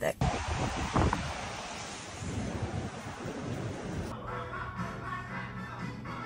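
A steady rushing noise with a single thump about a second in, then background music with a steady low note from about four seconds in.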